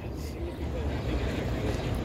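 A low, steady rumble of background noise, with no clear event in it.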